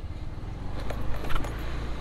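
Car engine running at low speed as the car approaches slowly along the street, a steady low hum, with a few faint clicks near the middle.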